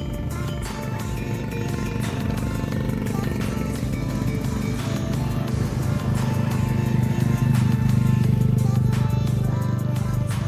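Background music over passing road traffic: motorcycle and car engines going by, their low engine noise growing louder in the second half.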